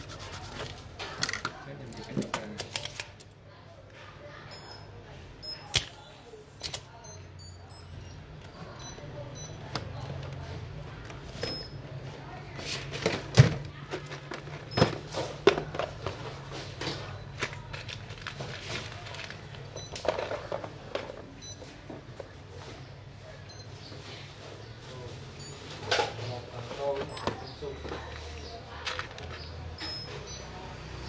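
Scattered clicks and knocks of tools and a circuit board being handled on a workbench, over a low steady hum, with faint voices in the background.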